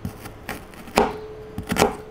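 Chef's knife slicing through small red shallots and tapping down on a plastic cutting board: several crisp cuts roughly every half second, the loudest about a second in, and a quick double cut near the end.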